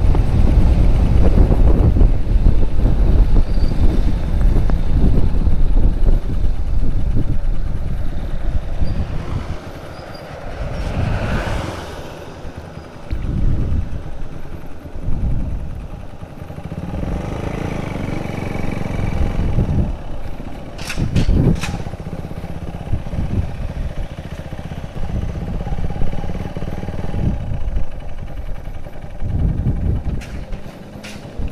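Motorcycle on the move with heavy wind noise on the microphone, then slowing down about a third of the way through, its engine running more quietly as it rolls along at low speed. A few sharp clicks come about two-thirds of the way through.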